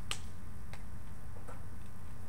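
Three small, sharp clicks spread over two seconds, the first the loudest, over a steady low hum.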